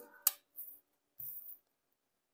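A single sharp tap of a cigano deck card being laid onto a wooden table, followed by two faint brief rustles of the cards.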